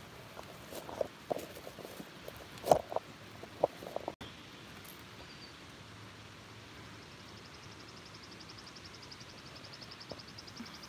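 Knocks and rustles from a handheld camera being set down among branches and forest litter, the loudest about three seconds in. After a short gap, a high, evenly pulsed trill starts in the woods about six seconds in and carries on.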